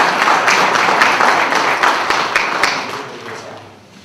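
Audience applauding, many hands clapping at once; the applause is loud at first and dies away over the last second or so.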